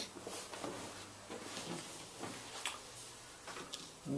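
Faint handling noises: small irregular clicks, knocks and rustles as parts and tools are moved about on a workbench.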